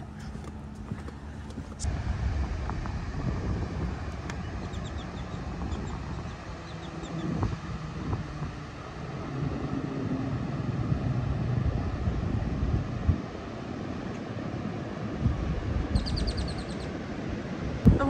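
Wind buffeting the microphone: a steady low rumble that gets louder about two seconds in. A short run of high chirps near the end.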